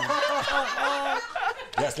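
People laughing and chuckling, with some talk mixed in.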